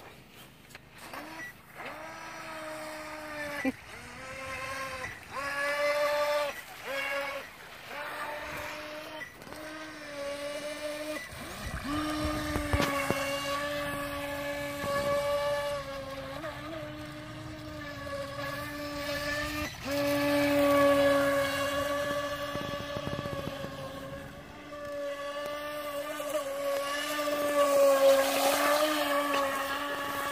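Feilun FT012 RC racing boat's brushless motor whining at speed. For the first ten seconds or so the throttle comes on and off in short bursts, then the whine runs almost unbroken with small rises and falls in pitch, growing louder twice as the boat runs close.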